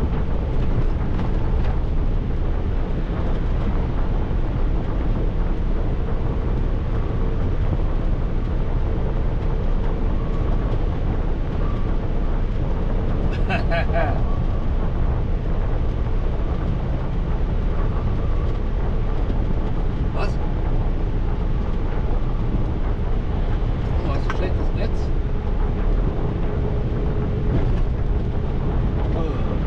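Steady road and wind noise inside a vehicle's cabin cruising on a motorway: a deep, even rumble from the tyres with a faint steady hum over it.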